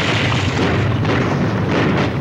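Loud, continuous rumble of explosions and artillery fire on a war-drama battle soundtrack, with no single distinct blast standing out.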